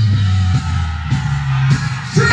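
Reggae music at concert volume over a sound system: deep held bass notes that step from note to note under a steady drum hit about every half second, with little singing.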